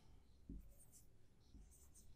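Marker writing on a whiteboard, very faint: a few short strokes, with near silence around them.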